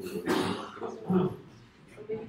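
A person coughing, a harsh burst, followed by a short voiced sound about a second later.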